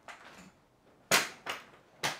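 Futon backrest hinge mechanism clicking as the backrest is pushed back toward recline: one sharp click about a second in, then a couple of softer clicks.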